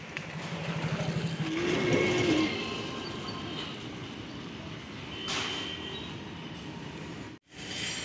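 Street traffic: a motor vehicle's engine buzzing over steady road noise, with a short pitched tone about two seconds in. The sound drops out for a moment near the end.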